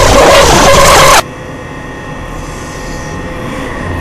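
Very loud, harsh distorted noise that cuts off suddenly just over a second in, leaving a quieter steady drone with a low rumble.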